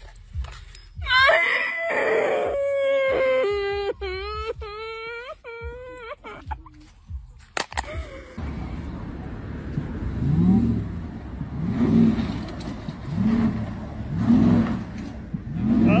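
A person's high wailing cries, rising and falling for several seconds. This is followed by a steady rumble with repeated low rising-and-falling sounds about every second and a half.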